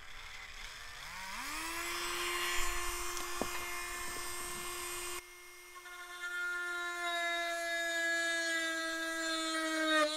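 Handheld rotary tool spinning up about a second in to a steady high-pitched whine, its small drill bit boring into soft balsa sheet to start a slot. The level drops suddenly about five seconds in, then the whine carries on.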